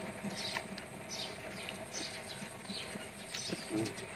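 Close-up chewing of noodles and raw leafy vegetables: soft wet crunching in short bites about twice a second, with a brief hum from the eater near the end.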